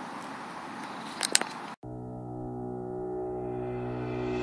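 Outdoor handheld-camera background noise with a couple of sharp clicks about a second in, then an abrupt cut to ambient background music: a held chord of steady tones that grows brighter.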